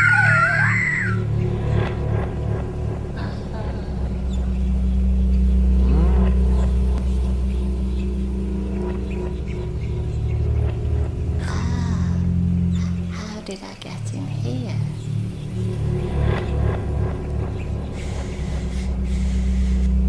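Dark, steady low drone from a cartoon soundtrack, made of several held deep tones, with a brief wavering high sound in the first second and a short dip in the drone about two-thirds of the way through.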